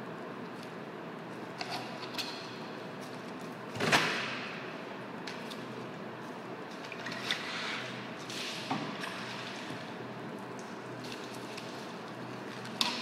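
Handling sounds at a fish-filleting bench: one loud thump about four seconds in, then a few lighter knocks and wet handling noises as fish are moved on a plastic cutting board, over a steady room hum.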